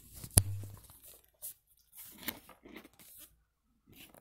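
A single sharp knock about half a second in, then a few faint rustles: handling noise from a handheld phone's microphone being bumped and moved.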